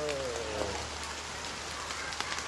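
Steady rain falling, an even hiss with faint scattered drop ticks; a calling voice trails off in the first moment.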